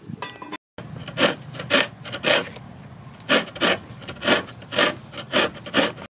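Coconut flesh being scraped on a hand grater: rhythmic rasping strokes, about two a second, with a short pause midway.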